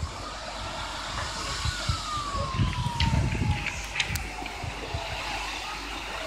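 Distant emergency-vehicle siren, one long tone sliding slowly down in pitch, over a steady noisy background with low irregular rumbles. A few sharp clicks come around the middle.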